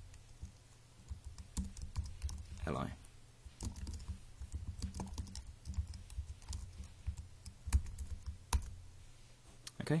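Typing on a computer keyboard: a run of irregular key clicks, with a few louder keystrokes near the end.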